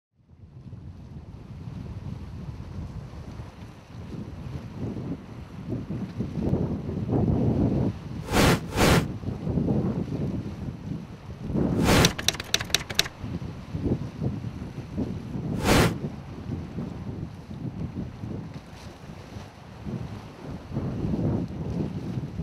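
Low, uneven rumbling noise, wind- or surf-like, with sharp clicks cutting through it: two about eight and a half seconds in, a quick rattle of them around twelve seconds, and one near sixteen seconds.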